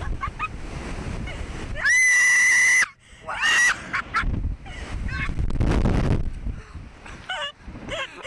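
A rider's long, steady high scream about two seconds in, loud enough to clip, followed by shorter shrieks and laughter, over steady rumbling wind on the microphone as the Slingshot ride flings and spins them through the air.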